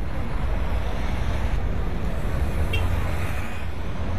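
City street traffic noise: a steady low rumble of passing vehicles with an even hiss over it.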